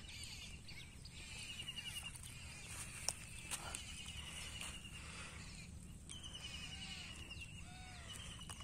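Faint rural outdoor ambience with birds calling: a short trill repeated every second or two, and a few short arching chirps near the end. There is a single sharp click about three seconds in.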